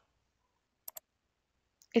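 Two quick clicks of a computer mouse button, a double-click about a second in, otherwise near silence.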